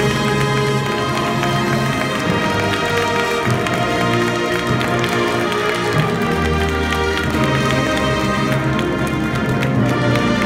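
High school marching band playing: brass holding slow sustained chords over low bass notes that change every few seconds, with light percussion.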